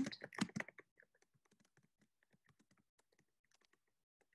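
Typing on a computer keyboard: a quick, irregular run of key clicks, louder for about the first second and faint after that.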